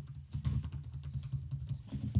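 Keys on an HP EliteBook x360 1040 G7 laptop keyboard being pressed, a quick irregular run of light clicks.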